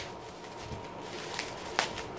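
Packaging being opened by hand: faint rustling, with a sharp click at the start and another near the end.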